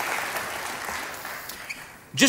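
Audience applauding, steadily fading away.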